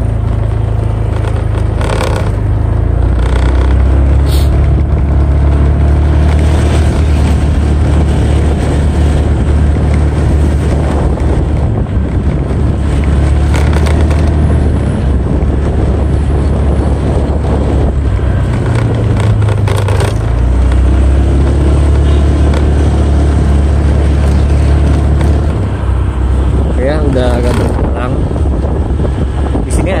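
Honda Vario scooter being ridden on a test ride: its single-cylinder engine and belt drive hum steadily, easing off and picking up again a few times, over road and wind noise. A few brief knocks come through as it goes over the surface; the rear license-plate holder has just had its clips wrapped in tape to stop it rattling.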